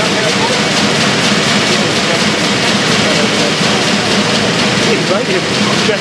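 Sheet-fed printing press running at production speed, a loud steady mechanical noise with a rapid even rhythm and a low hum. Voices murmur faintly under it near the end.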